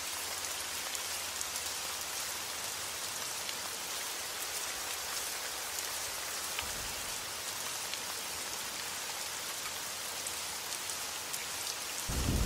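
Steady rain falling, an even hiss with faint scattered drop ticks.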